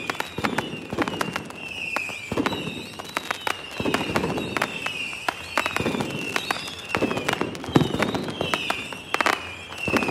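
Fireworks going off: many sharp bangs and crackling pops in quick succession. Short whistles falling in pitch recur about once a second.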